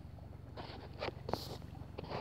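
Faint crackling with a few soft clicks: gas bubbles popping up through wet tidal mud in shallow water.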